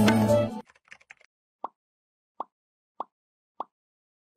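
Advertisement music cuts off about half a second in. It is followed by four short, evenly spaced pitched pops, the sound effects of an animated on-screen outro graphic.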